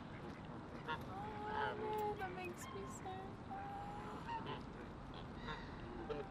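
Geese honking as they crowd around to be fed, with a string of calls from about one second in until past the middle.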